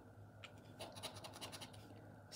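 Plastic poker chip scraping the scratch-off coating of a paper scratchcard: a light click about half a second in, then a quick run of faint scrapes.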